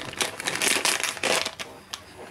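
Plastic soft-bait package crinkling in the hands as it is handled and opened: a rapid, irregular series of short crackles and rustles.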